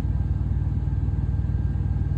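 Steady low rumble of an idling vehicle engine, as heard from inside a parked car.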